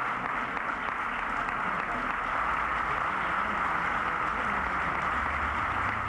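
Audience applauding steadily, with crowd voices mixed in.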